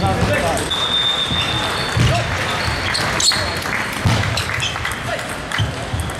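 Table tennis rally: the celluloid-type ball clicking off bats and the table in quick, irregular strokes, over the chatter of other players and spectators.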